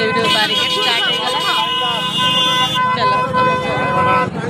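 A vehicle horn held in one long, steady blast, with people's voices around it.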